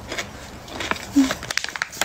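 A person biting into and chewing a crisp sour pickle, with a few short crunchy clicks, and a closed-mouth "mm" hum of enjoyment about a second in.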